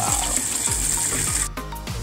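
Chicken wings in barbecue sauce sizzling in a frying pot, a steady hiss with crackle, over background music with a regular beat. The sizzle cuts off abruptly about one and a half seconds in.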